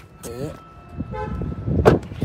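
A short car horn toot about a second in, followed near the end by a sharp thump.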